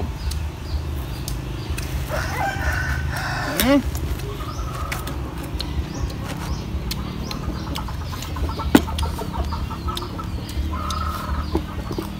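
Chickens calling in the yard: a longer call about two seconds in and a shorter one near the end, with scattered short clicks between them.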